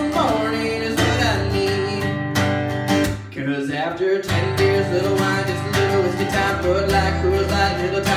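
Acoustic guitar strummed in a steady rhythm of chords, an instrumental passage with no singing. The strumming eases off briefly a little after three seconds in.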